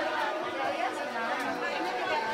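Several people talking at once, a busy babble of overlapping voices with no one voice standing out.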